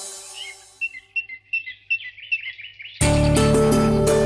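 Background music fades out, then a small bird chirps in a quick series of short, high calls for about two seconds. About three seconds in, loud rhythmic music cuts in abruptly.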